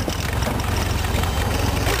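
Rat rod's engine running at low speed as the car rolls slowly, a steady low exhaust rumble.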